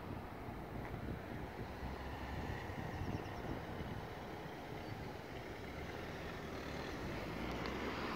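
Steady low outdoor rumble of background noise with no distinct event, growing slightly louder near the end.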